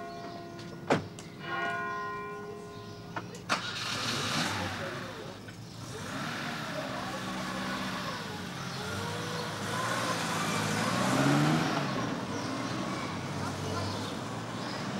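A church bell rings while car doors slam shut twice, about one second and three and a half seconds in, and the bell stops with the second slam. A car engine then starts and runs as the car pulls away, its pitch rising and falling.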